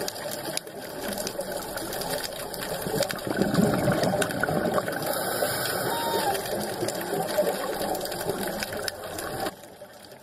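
Muffled underwater noise picked up through a dive camera's housing, with a dense crackle of clicks throughout. It drops abruptly to a quieter hiss near the end.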